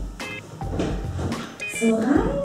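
Background music in which a short, high, bell-like figure recurs, with a single spoken word near the end.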